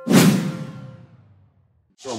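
Logo-sting sound effect: a sudden loud whoosh hit that cuts off a held chime and fades away over about a second and a half.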